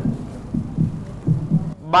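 A heartbeat sound effect: low, repeating thumps over a steady low hum, the suspense cue of a countdown to a decision.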